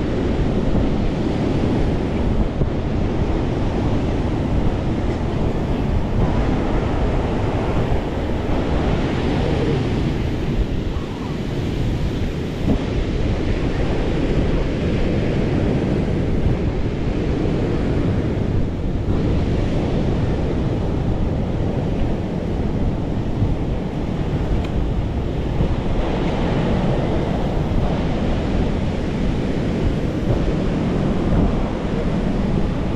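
Steady rushing of wind on the microphone of a moving bicycle camera, mixed with ocean surf breaking on the beach at high tide.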